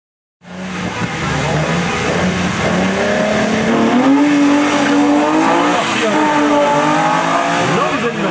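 BMW 323i E21's straight-six engine revving hard at the hill-climb start and then pulling away under full acceleration. Its pitch climbs, with a gear change near the end.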